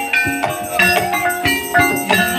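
Javanese gamelan playing a Banyumasan gending: overlapping struck metallophone notes over regular drum strokes.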